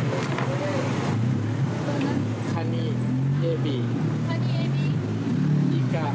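Street traffic noise, with a motor vehicle's engine running steadily close by as a continuous low hum.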